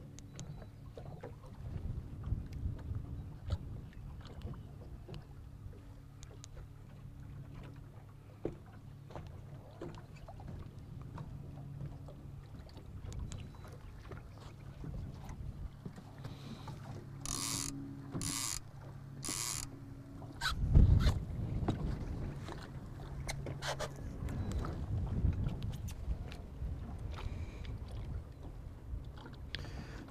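A small fishing boat's motor hums steadily at low speed while trolling. About halfway through come three short electronic beeps in quick succession, and a moment later a single loud low thump.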